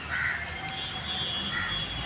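A crow cawing, two short calls about a second and a half apart.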